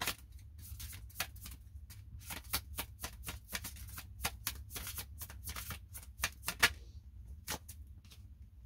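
A tarot deck being shuffled by hand: a quick run of light card flicks and slaps that stops about seven seconds in, then one more single card sound near the end as a card is pulled from the deck.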